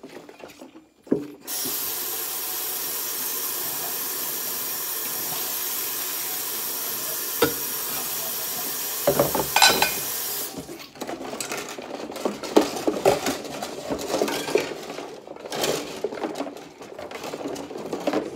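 Kitchen faucet running steadily into a stainless steel sink full of soapy water, cutting off about ten seconds in. Then ceramic plates being scrubbed with a sponge in the suds, with irregular rubbing, sloshing and light clinks.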